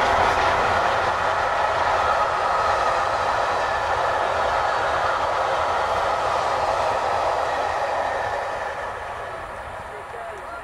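A train of Mk1 coaches behind steam locomotive 60163 Tornado rushing past at speed. The wheels on the rails make a loud, steady roar that starts to fade about eight seconds in as the train draws away.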